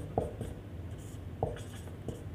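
Marker pen writing on a whiteboard: light scratching of the tip as letters are drawn, with a couple of short, sharper strokes, one just after the start and one about three quarters of the way through.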